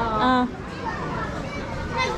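Speech: a short spoken phrase in Chinese, a thank-you and goodbye ('thanks, take care'), in the first half second, then fainter voices.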